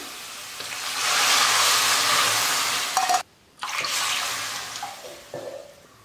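Water poured from a steel cup into a hot stainless steel kadai of sautéed onions and tempering: a rushing hiss that swells about a second in, then fades. The sound cuts out for a moment about three seconds in.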